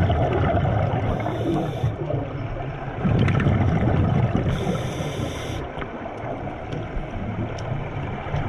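Scuba diver breathing through an open-circuit regulator: gurgling bursts of exhaled bubbles alternating with the hiss of the regulator on inhalation, the hiss heard twice, about a second in and again past the middle, with faint scattered clicks.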